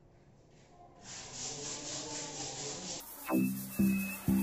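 Sandpaper rubbed by hand over painted wooden boards (180 grit), a rasping rub from about a second in, under background music. Near the end the music gets louder, with strong repeated notes.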